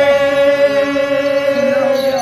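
A man holding one long sung note in Punjabi folk singing, dipping slightly in pitch near the end, over a lower steady accompanying tone.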